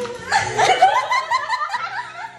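Young women laughing: a quick run of high-pitched bursts of laughter that starts about a third of a second in.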